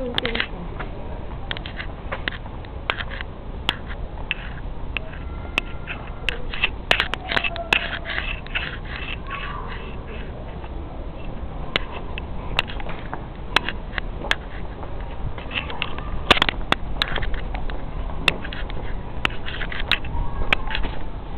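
Footsteps on a gravel floor, irregular crunches and clicks about twice a second over a low rumble of handling and wind noise.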